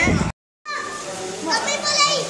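A child's high voice calling out "Papa". The sound cuts out completely for a moment about a third of a second in.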